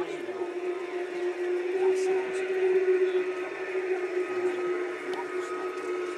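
A steady hum at one unchanging pitch, with faint voices of people talking in the background.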